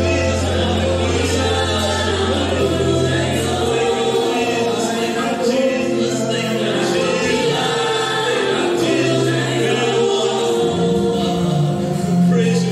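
Gospel worship team singing together in harmony with live band accompaniment, several voices holding long notes over sustained bass notes that shift in pitch every few seconds.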